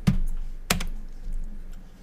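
Two sharp clicks from computer controls, about two-thirds of a second apart, over a low rumble.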